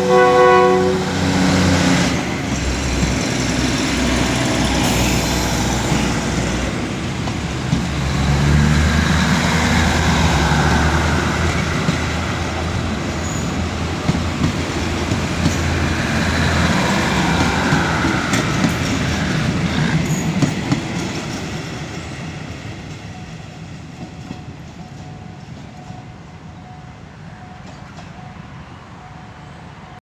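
State Railway of Thailand NKF diesel railcar train pulling out past close by: the end of a horn blast about a second in, then the diesel engines running and the wheels clicking and rumbling on the rails as the cars roll by. The sound fades away over the last ten seconds as the train draws off.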